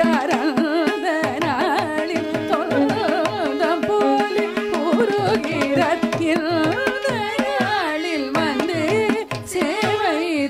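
Carnatic vocal music: a woman singing with ornamented notes that slide and waver, accompanied by violin and by mridangam and ghatam strokes, over a steady tanpura drone.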